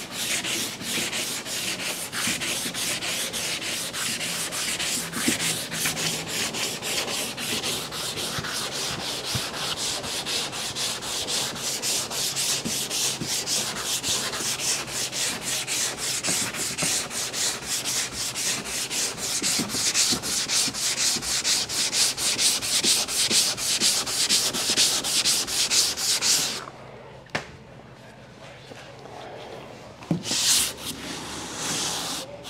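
Hand sanding block with 220-grit paper being run back and forth over body filler on the van's side body line, in rapid, even rasping strokes. It is shaping the filled dent. The strokes stop suddenly a few seconds before the end.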